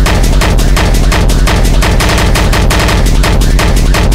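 Hardcore techno at 170 BPM: a heavy bass kick under a fast, dense run of sharp percussive hits, close-packed enough to sound like rapid fire.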